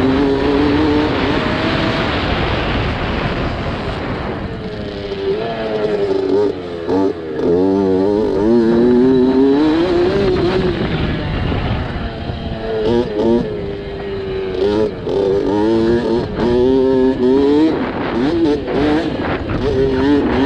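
Dirt bike engine heard close up from on board, revving up and dropping again and again as the rider accelerates and shifts along a dirt motocross track.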